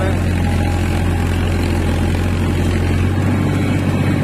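Farmtrac 45 tractor's diesel engine running steadily under load from a rotavator, heard from the driver's seat; its low note shifts slightly about three seconds in.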